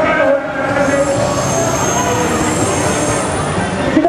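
Commuter train running on the elevated tracks overhead, a steady rumble with a high-pitched wheel squeal from about a second in until just before the end.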